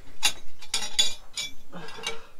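Small metal parts clinking together as they are picked up and handled: several sharp clinks. These are the old table's metal fittings, including the slider that goes underneath.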